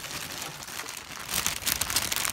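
Crinkly plastic packaging being handled and rummaged through. It is faint at first and turns into busy, rapid crackling from about a second and a half in.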